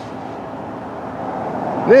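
Distant freight train with diesel locomotives approaching head-on: a steady, toneless running noise that grows gradually louder.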